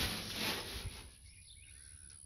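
A low rustling noise that fades away over the first second, then quiet outdoor ambience with a few faint bird chirps.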